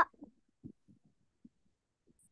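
Near silence on a video-call line, with a few faint, short, low thumps spread through it, the loudest about two thirds of a second in.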